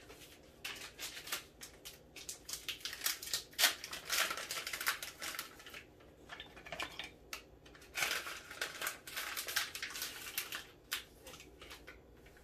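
Paper packet of vanilla sugar crinkling and rustling as it is handled, in three spells with short pauses between.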